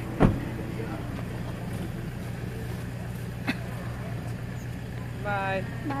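A car door slams shut about a quarter of a second in, then the car's engine idles steadily, with a small click about halfway through.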